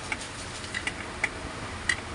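A steel rod tapping on the metal hub of a ceiling fan motor near its shaft: about five light, irregular metallic taps, each with a short ring.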